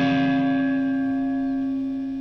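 Electric guitar with its D and G strings crossed over each other and plucked together, ringing out as a bell-like chime that slowly fades.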